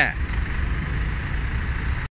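Steady low rumble of an idling vehicle engine.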